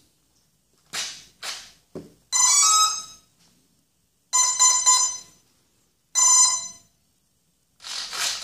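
A couple of scuffs and a click as the XT60 battery connector is plugged in, then the brushless motor, driven by a Hobby King 30 A speed controller on a 3-cell LiPo, gives three start-up beeps, each about two-thirds of a second long and a second or two apart. The beeps show the speed controller has powered up and is working.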